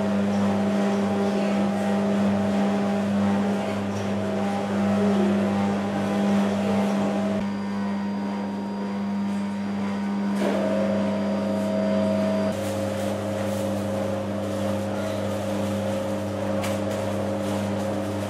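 A steady low electrical hum, like a machine's electric motor running, with a few small clicks and handling noises in the later seconds.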